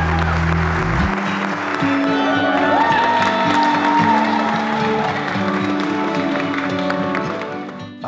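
Background music with long held notes, its deep bass dropping out about a second in, over a crowd applauding.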